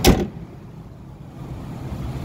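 2014 Nissan Rogue's hood slammed shut: a single sharp bang right at the start, followed by a low steady background.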